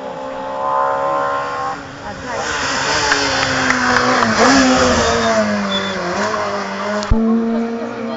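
Hill-climb race car, a hatchback, driving past close by at speed. Its engine is heard at high revs and swells to its loudest as the car passes, about four to five seconds in, with its note falling as it goes by and on up the road. A sharp knock comes about seven seconds in.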